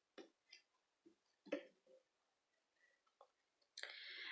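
Near silence, with a few faint, short rustles and ticks from hands handling yarn and a crochet hook.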